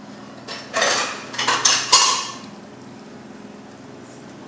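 Metal spoon scraping and clinking against a ceramic bowl as a chopped herb mixture is stirred: a quick run of scrapes and clinks from about half a second in to just past two seconds, a couple of them ringing briefly.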